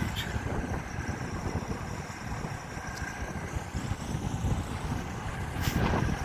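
Wind buffeting the microphone in a gusting low rumble, over the distant running of semi-truck diesel engines, with a faint steady high hum.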